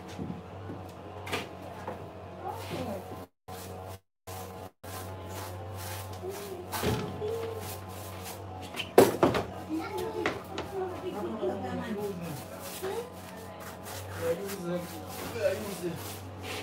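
Indistinct voices in a small room over a steady low hum, with a sharp knock about nine seconds in. The sound cuts out completely three times in quick succession about four seconds in.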